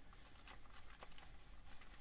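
Faint sloshing and handling noise from a full can of Chocomel chocolate drink being shaken by hand.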